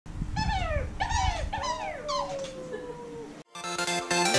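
High, dog-like whimpering whines: three short calls that fall in pitch and a fourth that trails off into a long, fading fall. After a brief silence near the end, music starts.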